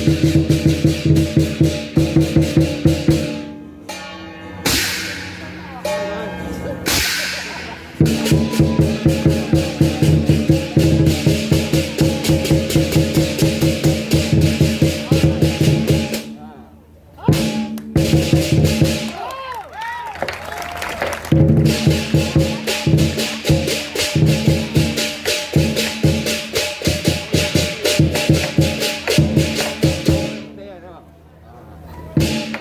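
Southern lion dance percussion: a big drum with crash cymbals and gong beating a fast, dense rhythm. It breaks off twice, once a few seconds in and again just past the middle, then comes back strongly to the end.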